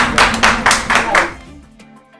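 About six sharp hand claps, roughly four a second, over background music. The claps stop about one and a half seconds in, and the music carries on alone, more quietly.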